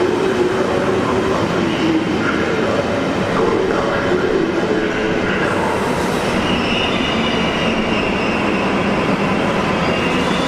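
Deutsche Bahn ICE high-speed train rolling slowly past the platform, a steady rumble of wheels and running gear with drawn-out, wavering squealing tones, higher-pitched from about the middle on. The sound rings in a large, enclosed station hall.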